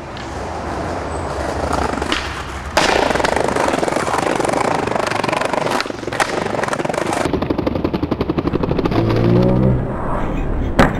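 Skateboard wheels rolling on concrete, coming in loudly about three seconds in, with the sharp clack of a kickflip's pop and landing about six seconds in. Later comes a fast rattle, and in the last second a falling pitched sound.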